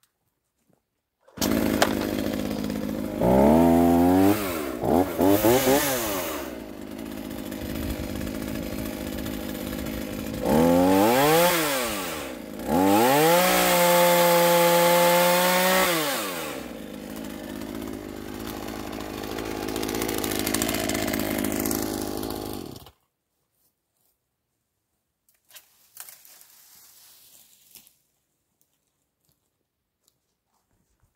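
Small handheld chainsaw cutting upright olive branches, its motor pitch swooping up and down as it revs and bites into the wood. It starts abruptly just after the start and cuts off suddenly about three-quarters of the way through, after which only a few faint sounds are heard.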